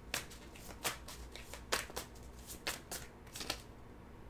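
A deck of tarot cards being shuffled by hand: a run of short, crisp, irregular card flicks and snaps.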